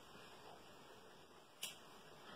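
Near silence: room tone, with one short click about one and a half seconds in.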